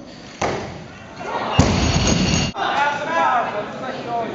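Loaded barbell with bumper plates dropped on the lifting platform: a thud about half a second in, then a louder crash lasting about a second that cuts off suddenly. Voices start up near the end.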